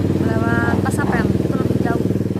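Motorcycle engine running steadily as the bike rides across a suspension bridge toward the microphone, a fast even putter that carries under a woman's voice.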